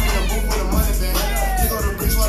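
Hip hop track with a heavy, steady bass beat, with high, sliding pitched sounds over it between about half a second in and the end.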